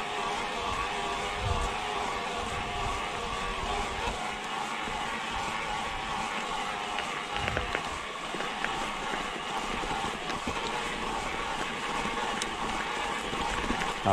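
Mountain bike riding uphill on a gravel track: steady tyre noise on the loose gravel with a faint steady hum under it, and a few light clicks.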